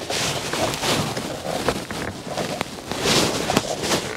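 Rustling and scraping handling noise as a small screwdriver is worked in behind a VW New Beetle's steering wheel to lever down the spring clip that holds the airbag. It grows louder near the start and again about three seconds in.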